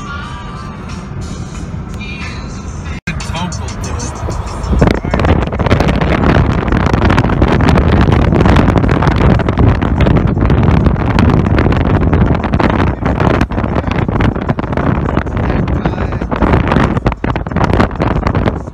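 Car interior road noise, then about three seconds in a much louder, gusty rush of wind and road noise from a vehicle driving along a highway with the side window open.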